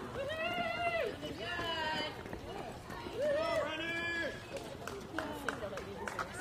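Spectators shouting encouragement at passing runners in several drawn-out, high-pitched calls, with the runners' footsteps slapping the pavement.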